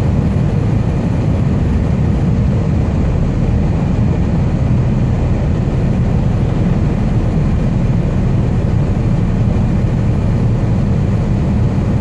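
Steady low drone of a Scania R440 truck's engine and tyres on the road, heard inside the cab while cruising at highway speed.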